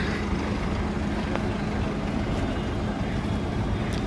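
A bus engine idling, a steady low rumble with a faint constant hum.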